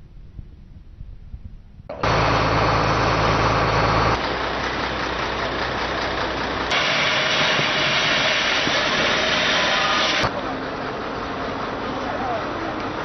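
Loud, steady rushing noise at a car fire where firefighters are hosing down the burning wreck, starting abruptly about two seconds in. A deep engine-like hum runs under it at first, and the sound changes suddenly several times as clips are cut together.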